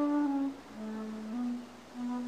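A slow hummed melody of long held notes, stepping down in pitch and then rising slightly near the end.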